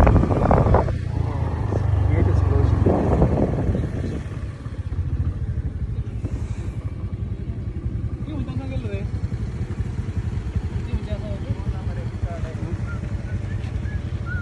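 Motorcycle engine running while riding, with loud wind rumble on the microphone for the first few seconds. It then settles into a steadier, quieter low putter as the bike slows.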